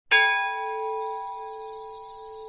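A single bell strike that rings on in several steady tones, fading slowly.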